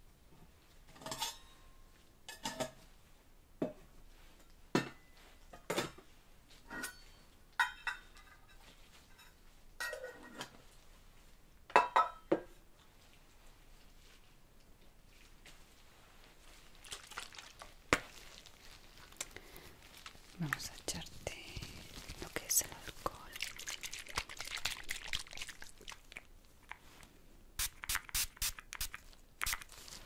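Gloved hands handling medical supplies on a trolley: a series of separate sharp clicks and knocks as containers and items are picked up and set down, about one a second. Through the middle comes a stretch of rustling and crinkling, and a quick run of clicks near the end.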